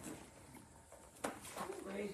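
A quiet pause with two light knocks, then a brief low murmur of a voice near the end.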